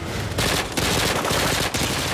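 Heavy volley of gunfire from many guns at once, shots overlapping in a dense, continuous rattle that starts about a third of a second in.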